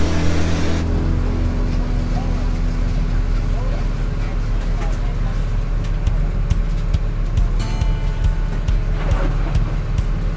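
Crab workboat's engine running steadily under the deck work, with scattered clicks and knocks. A short stretch of music ends about a second in.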